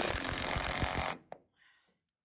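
Power drill driving a screw for just over a second, then stopping abruptly, followed by a single sharp click.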